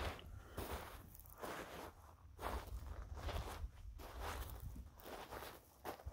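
Footsteps crunching on a gravelly dirt road at a steady walking pace, about one step a second.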